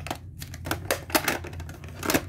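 Plastic VHS clamshell case and cassette clicking and clattering in the hands, a quick irregular run of about eight small clicks as the tape is set back in and the lid is swung shut.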